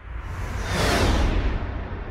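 A whoosh sound effect swells up and fades away over about a second, peaking mid-way, during an animated logo transition. A steady low drone from the music bed runs underneath.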